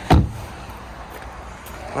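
Rear passenger door of a 2012 Vauxhall Astra being shut: one solid thud just after the start, followed by a low steady background.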